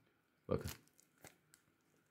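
A couple of faint, brief crinkles and clicks of a plastic lure packet being handled, after a single short spoken word.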